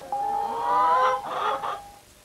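Domestic hens calling: drawn-out rising squawks for about the first second, then a few quicker, rougher clucks. A steady high tone runs underneath and stops at the end.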